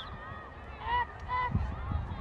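Two short honking calls, about half a second apart, over faint voices from the field.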